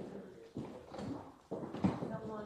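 Faint voices in the room with a few knocks and bumps, the loudest near the end.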